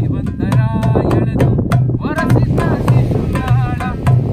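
Darbuka (goblet drum) played by hand in a steady rhythm, with deep bass strokes about twice a second and quick, sharp rim taps between them. A man's voice sings a melody over the drum in short phrases.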